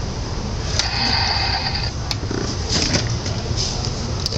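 Cicada giving a brief buzz, starting with a click about a second in and lasting about a second, followed by a few short clicks near the end, over a steady low background rumble.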